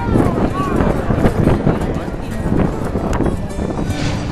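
Voices talking over music playing in the background.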